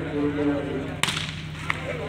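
A single sharp slap about a second in: a hand striking a volleyball, followed by a fainter click, over the voices of people talking.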